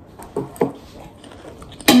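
A person eating salad: a couple of soft chewing sounds, then near the end a sharp click and a short hummed 'mm'.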